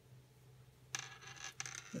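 Faint metallic clinking and scraping of metal circular knitting needle tips against each other as the stitches are handled, starting about halfway in.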